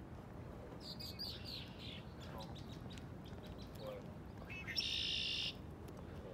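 Songbirds in the trees calling: a run of high falling notes about a second in, then a loud buzzy trill near the end that stops abruptly, over a steady low background hum.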